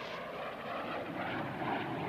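A steady, engine-like droning din with a faint low hum underneath, holding an even level throughout.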